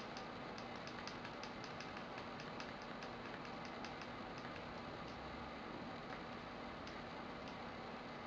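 Quiet room tone with faint, light ticks, a few a second and unevenly spaced.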